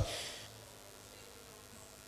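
A pause in speech filled with a faint, steady low hum of room tone, after the voice's echo dies away in the first half second.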